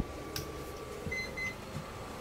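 Two short electronic beeps in quick succession about a second in, after a couple of faint clicks, over a steady faint hum in a small room.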